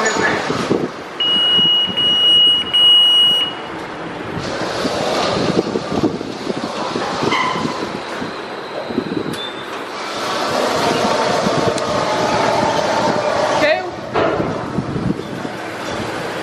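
PDQ Tandem RiteTouch automatic car wash running, spraying water over a car in the bay as a steady rushing wash. A steady high beep lasts about two seconds near the start.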